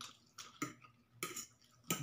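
Eating sounds from a man working a fork through a ceramic plate of instant noodles: about five short, sharp sounds spread across two seconds, with quiet between.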